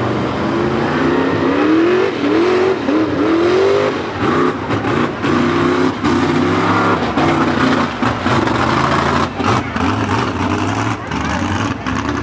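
Mud truck's engine revving hard as it drives through a mud pit, its pitch climbing over the first few seconds, then rising and falling again and again as the throttle is worked.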